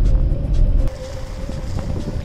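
Low rumble of a moving car's road noise, dropping off suddenly a little under a second in, under background music with a long held note.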